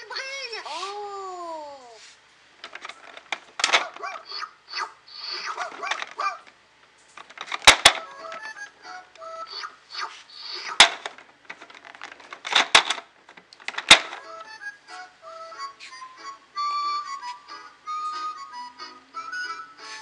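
Electronic sound effects and jingles from a Disney Mickey bilingual activity table: falling whistle-like glides at first, then short bursts of toy sounds broken by several sharp clicks, and a short electronic tune of quick notes near the end.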